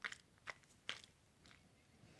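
Faint lip smacks and tongue clicks of someone tasting a mouthful of whisky, four short ones over two seconds.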